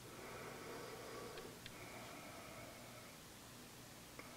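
Near silence: faint room tone with a low steady hum and a couple of small clicks about one and a half seconds in.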